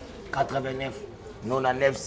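A man's voice speaking in short phrases, with brief pauses between them.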